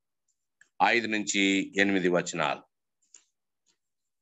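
A man's voice speaking for about two seconds over a video-call connection, cut off to dead silence either side, with a couple of faint clicks.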